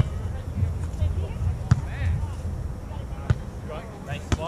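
A volleyball being struck by players' hands and forearms during a beach volleyball rally: a few sharp smacks, about a second and a half apart.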